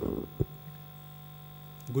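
Steady low electrical mains hum from the hall's sound system, with two short low thumps in the first half second.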